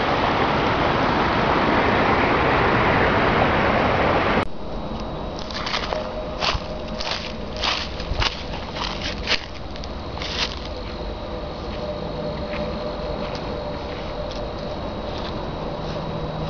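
Shallow river water running over riffles, a steady rushing that cuts off abruptly about four seconds in. After that it is much quieter, with a few seconds of crunching steps through dry leaves on the bank.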